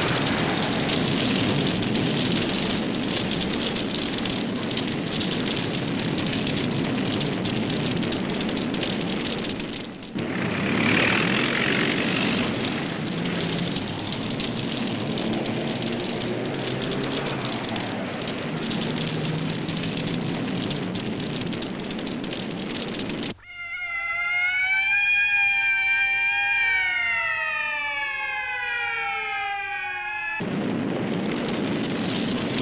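A dense, steady rush of fire and battle noise, with a brief dip about ten seconds in. About 23 seconds in it cuts off abruptly and a siren sounds alone, rising, holding, then winding down in pitch.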